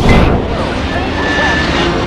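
Trailer sound effect: a sudden hit opening into a loud, steady rushing rumble, with a faint high steady tone partway through.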